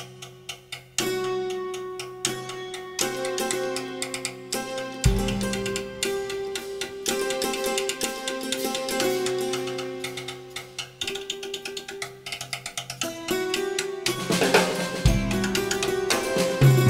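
Electronic drum kit played with sticks through a hammered dulcimer sound, on an overtone scale (one, two, three, sharp four, five, six, flat seven). Quick repeated strikes ring on pitched notes that change every second or so, with drum hits mixed in and a deep low note about five seconds in and again near the end.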